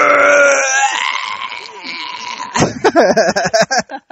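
A loud, drawn-out bleating cry that fades out over the first two seconds. Near the end comes a quick run of short clicks and wavering vocal sounds.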